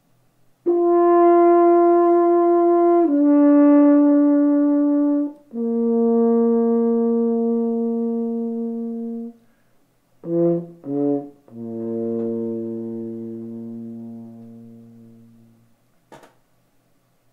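Double French horn played solo in a slow descending phrase: three long held notes each stepping lower, two short notes, then a long low note that slowly fades away.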